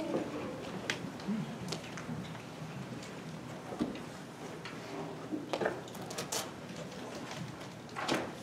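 Quiet room ambience with scattered light clicks and knocks, a handful spread across a few seconds.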